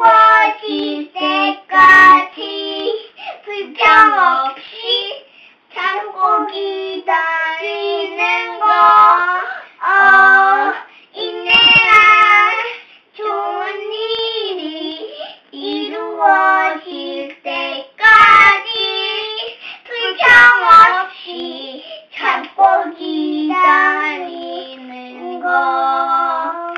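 A young girl and boy singing an action song together in high children's voices, with held notes and no instrumental accompaniment. A few sharp pops cut through the singing.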